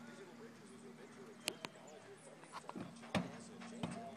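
A filly's hooves knocking on the floor of a horse trailer as she steps up and loads in: a handful of sharp, uneven knocks, the loudest about three seconds in.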